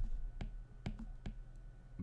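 A handful of separate sharp clicks from a stylus tapping and writing on a drawing tablet, over a faint low hum.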